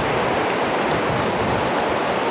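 Small shore waves washing in over flat wet sand, a steady rush of surf and foam close by.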